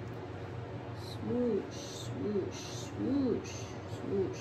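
A voice makes three short hooting sounds, each one rising and then falling in pitch, about a second apart. Soft scraping strokes come between them.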